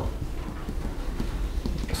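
Felt-tip marker writing characters on a whiteboard: a series of short, light strokes and taps.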